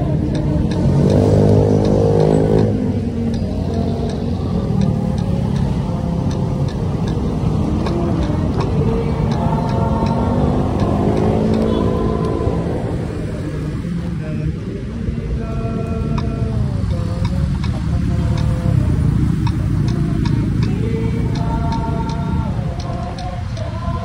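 Road traffic heard from a moving bicycle: motorcycle and car engines passing and revving over steady road and wind noise. The engine pitch rises and falls about a second in and again around ten seconds in.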